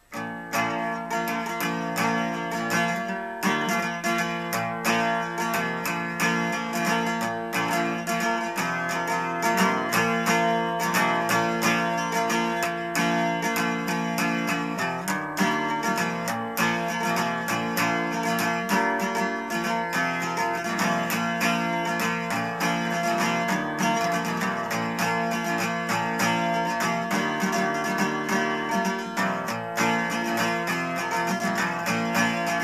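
Steel-string acoustic guitar with a capo on the third fret, strummed continuously through a four-chord progression in varying strum patterns.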